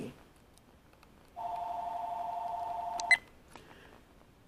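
An electronic two-tone beep, held steady for nearly two seconds and starting about a second and a half in, cut off by a short chirp.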